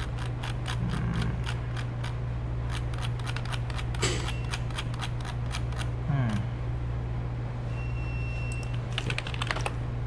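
Rapid clicking of computer keyboard keys, in quick runs, over a low steady hum.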